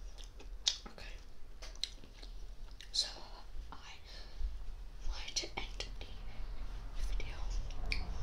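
Close-miked chewing of KFC fried chicken, with a run of short, sharp mouth clicks, and soft whispering now and then.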